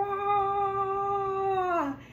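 A voice holding one long, high, steady note for nearly two seconds, dipping slightly in pitch as it ends, like a playful sung or mewing call.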